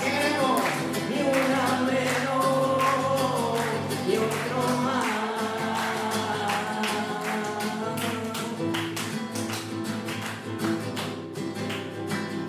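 A man singing to his own strummed acoustic guitar: steady strummed chords under a sung melody.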